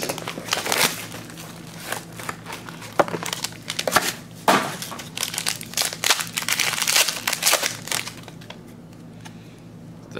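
Hands tearing the seal off a trading-card box and then crinkling and tearing open a foil card pack, an irregular run of crackles and rips that thins out near the end.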